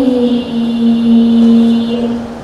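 A boy's voice through a microphone holding one long melodic note in a chanted Quran recitation (tilawah). The note bends briefly near the start, then holds steady to the end.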